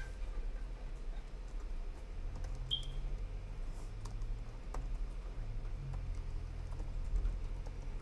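Typing on a computer keyboard: irregular, scattered keystrokes over a low steady hum.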